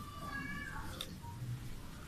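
A short high-pitched cry, held and then falling in pitch, in the first second, followed by a single sharp click about a second in.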